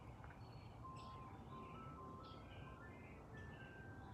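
Faint, distant ice cream truck jingle: a simple melody of short, clear notes stepping upward in pitch.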